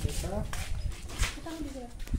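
Brief bits of a person's voice, talking in short phrases, over a low rumble of wind on the microphone.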